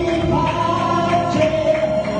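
Two vocalists singing together through microphones over an amplified backing, with long held notes.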